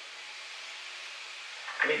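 Faint, steady sizzle of spaghetti squash frying in a skillet on medium heat. It is an even hiss with no pops or crackles.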